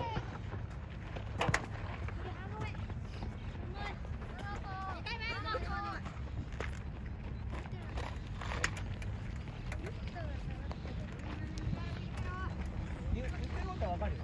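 Voices of young soccer players calling out during play, loudest about halfway through, with a sharp knock about a second and a half in and another later on, over a steady low rumble of wind on the microphone.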